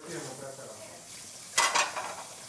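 Steady hissing room noise with a short, loud clatter about one and a half seconds in.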